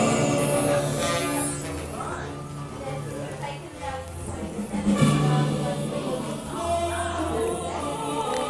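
Background music with sustained tones over a slow, low bass line.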